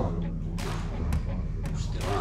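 A few short, sharp knocks or taps spread over about two seconds, over a low steady hum.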